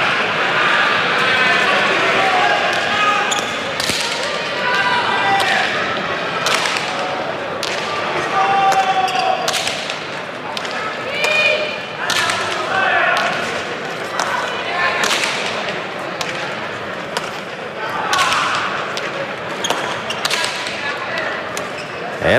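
Hand-pelota rally: the hard leather ball struck with bare hands and rebounding off the front wall and floor of the frontón, sharp cracks about once a second, over crowd voices.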